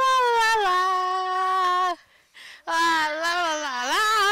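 A high voice holding long wordless wailing notes: one held tone that steps down in pitch and stops about two seconds in, then after a short gap another held tone that dips and rises near the end.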